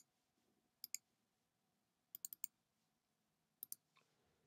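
Faint computer mouse button clicks over near silence: a pair about a second in, a quick run of four a little after two seconds, and another pair near the end.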